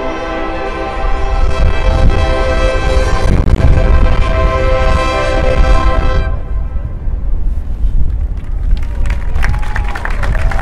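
Marching band brass and winds holding a loud sustained chord over drums, swelling about a second in and cutting off together about six seconds in. Crowd noise follows, with cheers and scattered claps near the end.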